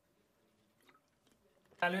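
Near silence with a couple of faint gulps as a man drinks from a plastic water bottle close to a table microphone. A man's voice starts speaking near the end.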